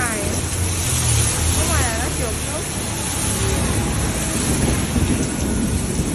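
Heavy rain pouring steadily, with the low rumble of street traffic underneath. Brief voice-like sounds come near the start and again about two seconds in.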